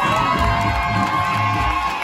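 Club audience cheering and whooping loudly over the backing music, with many voices rising together at the start.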